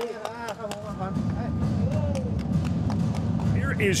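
Arena sound at the end of a Muay Thai bout: a few men's voices calling out over a low, steady rumble, with scattered short clicks and light thuds. The ring announcer starts speaking right at the end.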